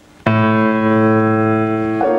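Grand piano: a chord struck suddenly about a quarter second in and held ringing, with the next chord coming in at the very end.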